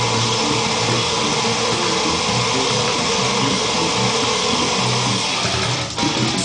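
Ibanez SR506 six-string electric bass playing fast brutal death metal riffs in a loud, dense, distorted mix that carries on without a break.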